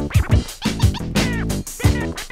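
Hip hop beat with record scratching over the drums.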